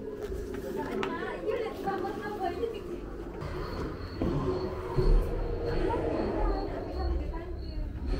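Indistinct, low voices in the background, with low handling thumps. From about halfway a faint high chirp repeats evenly, a couple of times a second.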